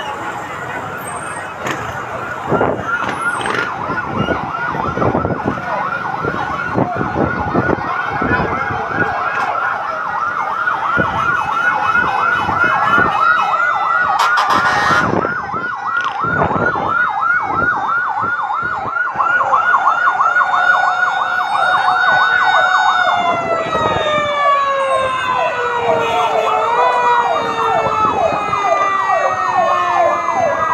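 Several fire truck sirens sound together: fast, repeating yelps overlap with a slower wail beneath. In the last part their pitch slides downward.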